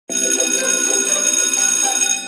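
A bell ringing steadily, with a rich, metallic set of fixed tones; it starts suddenly at the very beginning.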